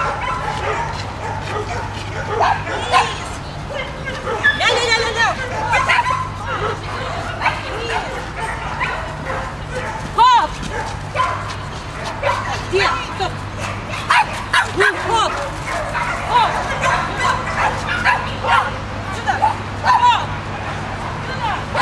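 Dogs barking with many short, high yips scattered throughout, over voices talking.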